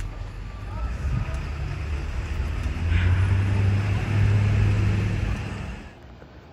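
A car driving past, its low rumble swelling about halfway through and easing off near the end.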